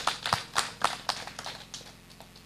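Scattered hand claps from a few listeners, several sharp claps a second that thin out and fade.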